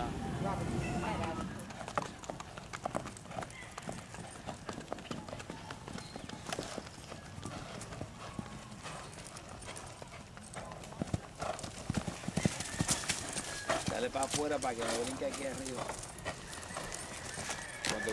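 Paso Fino stallion's hooves beating rapidly and evenly as he is ridden in his quick four-beat gait. A horse whinnies, with a wavering tone, about three-quarters of the way through.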